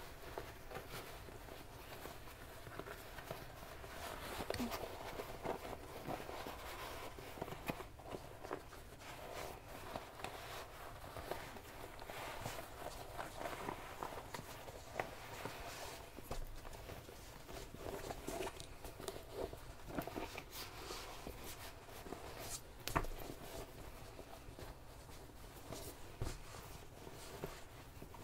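Faint rustling and crumpling of fabric as a sewn bag of cork fabric and quilting cotton is turned right side out by hand, with scattered soft clicks and one sharper click near the end.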